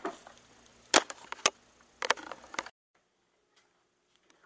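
A few sharp knocks or clicks: one about a second in, another half a second later, then a quick cluster just after two seconds. The sound then cuts off suddenly to near silence.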